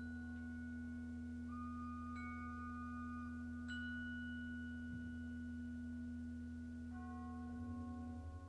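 Pipe organ holding a low sustained chord while struck metal percussion adds long-ringing, bell-like tones. New strikes sound about two seconds and three and a half seconds in, and the organ's upper notes shift near the end.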